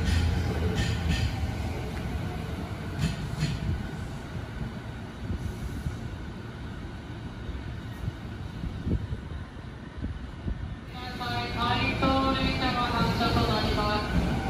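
JR 209 series 2200 electric train pulling in along the platform and slowing to a stop: a low running rumble with a few rail clicks early on, fading as it slows. A station PA announcement starts a few seconds before the end.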